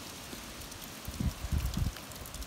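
Wind buffeting an outdoor microphone: a steady hiss with a few low gusts a little after a second in.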